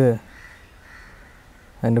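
A low-pitched voice says a word right at the start and starts speaking again near the end; in between there is only faint steady background noise.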